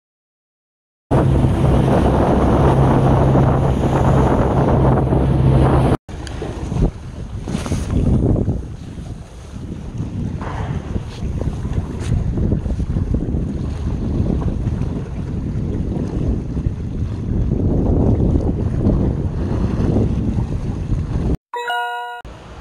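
Wind buffeting the microphone over choppy sea waves. For the first few seconds a steady low engine drone runs under it, then cuts off, leaving the gusting wind and water.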